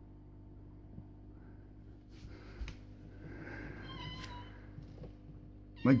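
A house cat meowing once, a short high call about four seconds in.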